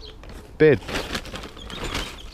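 A hand smoothing loose seed-raising mix over a seedling tray, making a soft gritty rustle, twice.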